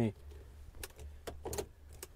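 Three sharp clicks of the vehicle's light switches being turned on, over the low steady hum of the idling engine.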